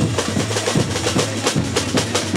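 Samba bateria (a samba school's percussion section) playing a fast, dense rhythm of drum strokes, with a steady low drum note underneath.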